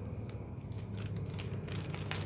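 Thin clear plastic bag crinkling in the hands, a scatter of sharp crackles that come thicker in the second half.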